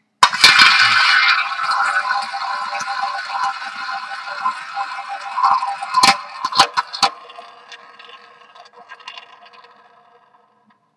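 Small tabletop roulette wheel spun by hand, its ball running around the bowl with a steady rattling whir that slowly fades. From about six seconds in the ball clicks against the pockets a few times, then a few faint ticks as it settles.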